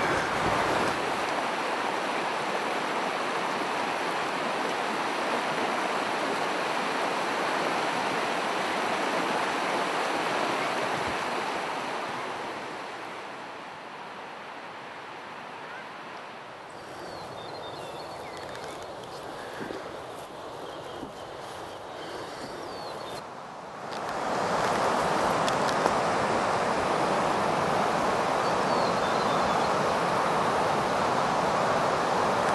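A stony river rushing steadily. It grows quieter through the middle and comes back louder with a sudden step about four-fifths of the way through.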